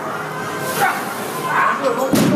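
Two short, high-pitched human cries, about a second apart, over background gym noise as a heavily loaded barbell back squat is attempted.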